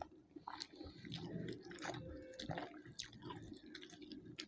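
Close-up wet eating sounds: chewing with many small, sharp mouth clicks, and fingers working curry-soaked rice on a plate.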